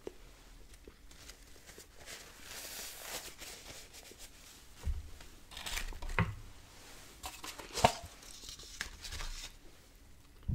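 Paper food wrapper rustling and crinkling as it is handled, with a few sharp taps; the loudest tap comes near the end.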